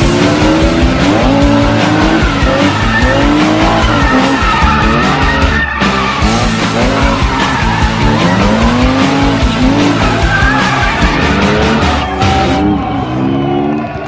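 Drift cars' engines revving up and down with tyre squeal as they slide, mixed under music with a steady beat.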